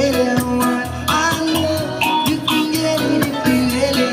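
Live reggae played by street buskers: guitar with hand-percussion backing, keeping a steady beat.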